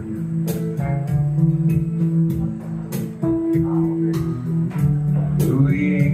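Electric guitar played live through an amplifier, picking a blues melody over a steady bass line.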